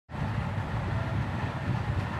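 A steady low rumble with a faint hiss above it, starting just after the beginning.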